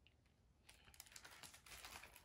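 Faint crinkling and clicking of a plastic-covered hardcover picture book being handled and opened, a rapid run of small crackles starting a little over half a second in.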